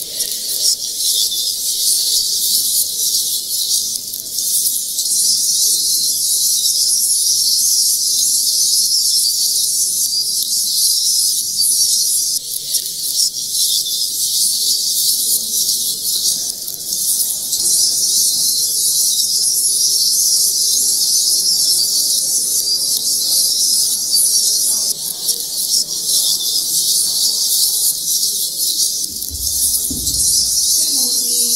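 A steady, loud high-pitched hiss that flickers without a break, with a faint low murmur beneath it.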